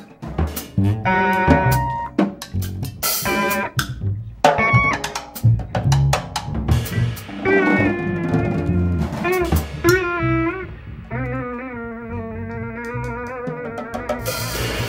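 Live instrumental trio of a headless Teuffel Tesla electric guitar, a plucked double bass and a drum kit. Busy snare and cymbal hits fill the first half. From about halfway the guitar holds long notes with a wavering vibrato, and the drums thin out near the end.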